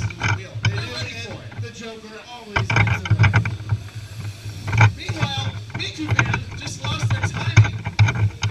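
Indistinct nearby voices mixed with the hum and rattle of small electric ride-on racing karts going by on the track, with a low uneven rumble and scattered clicks.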